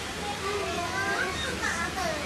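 Indistinct chatter of people away from the microphone in a hall, including children's high voices.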